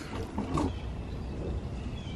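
Creaking and rustling of a sleeping bag and inflatable sleeping pad as a person climbs into a car's back seat and settles onto the makeshift bed, with a brief faint vocal sound about half a second in.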